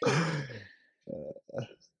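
A breathy, sigh-like voiced exhale with falling pitch, then two short bursts of soft laughter.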